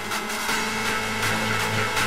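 Hard dance music from a DJ mix: a buzzing, machine-like synth over a steady held bass note, with only light percussion.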